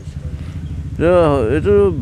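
A vehicle engine idling with a steady low pulsing rumble, heard alone for about the first second before a man's voice talks over it.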